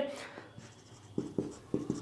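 Marker pen on a whiteboard: a few short strokes and taps in the second half as writing begins.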